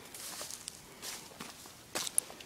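A few faint, scratchy footsteps through grass and dry, cracked soil and twigs.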